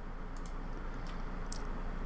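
Steady room noise with a low hum, and about three faint clicks of a computer mouse.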